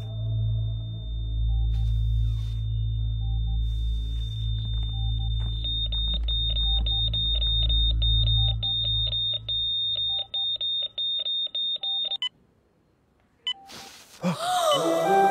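Hospital patient monitor alarm: a continuous high tone with repeated beeps, the steady tone of a flatline as the monitor's traces run flat, over a low droning film score that fades away. The beeping then stands alone for a couple of seconds before all sound cuts off suddenly about twelve seconds in.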